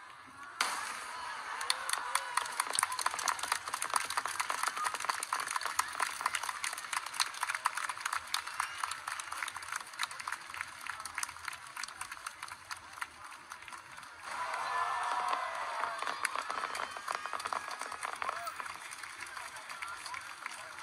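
Fireworks display with dense, irregular crackling from the bursting shells, over a crowd's voices. The crowd's voices swell louder for a few seconds about fourteen seconds in.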